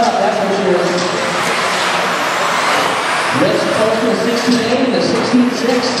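Electric 1/10-scale 2WD modified RC buggies running on an indoor carpet track, their motors and tyres making a continuous hiss-like whir. An announcer's voice carries over it, indistinct and echoing in the hall.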